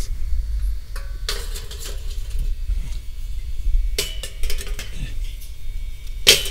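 Stainless steel grill grate handled and set onto the steel bowl of a smokeless charcoal grill: metal clanks and scrapes, the louder ones about a second in and about four seconds in, over a steady low rumble.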